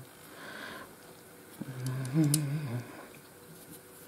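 A woman hums a short wordless "mm" with a gently rising and falling pitch about halfway through, while a few faint ticks come from glass beads and thread being handled.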